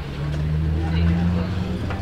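A low, steady engine-like hum that fades near the end, heard under faint background chatter.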